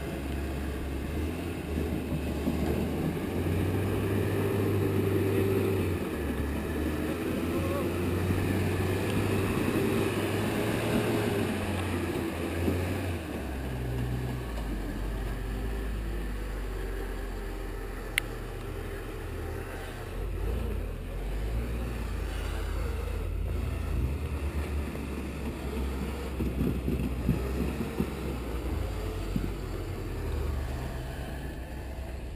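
Lifted pickup truck's engine running at low revs as it crawls over rocks, its note shifting up and down in steps, with a single sharp click about 18 seconds in.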